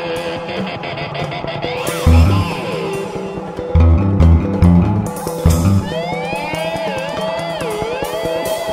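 Solo electric bass played by two-handed tapping on the fingerboard. Clusters of low notes sound under a held high note, and high notes slide up and down in pitch near the end.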